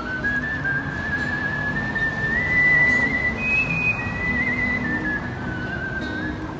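A person whistling a slow melody into a microphone, one clear tone that climbs in steps and then falls back toward the end, over faint low instrument notes.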